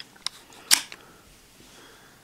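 A few sharp plastic clicks from a handheld Xros Loader toy being handled and its buttons pressed, the loudest about three quarters of a second in.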